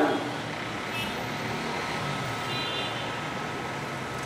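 Steady background noise of road traffic, with a faint short high-pitched tone about a second in and another near the three-second mark.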